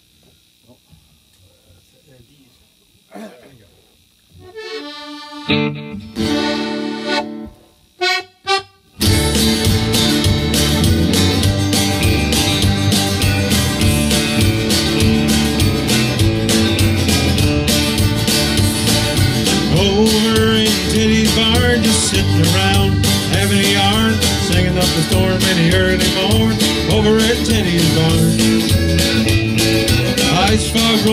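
After a few quiet seconds and a few held chords, a small band comes in together about nine seconds in: a diatonic button accordion leading, with acoustic guitar and electric bass, playing the instrumental intro of a country-style song.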